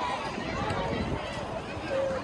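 Children's voices talking and calling out over one another outdoors.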